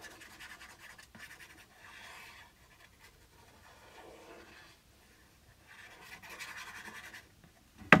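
Fine-tip nozzle of a glue squeeze bottle scratching across card as lines of glue are drawn, in a few soft, faint strokes. A single sharp tap comes right at the end.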